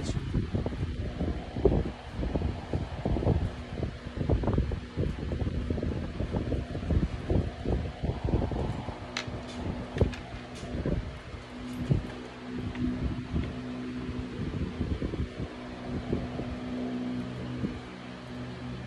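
A steady fan-like hum with low rumbling and irregular soft thumps. A few light clicks come near the middle, fitting cards being handled on the table.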